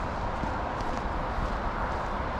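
Footsteps on a packed-snow road over a steady wash of distant traffic noise.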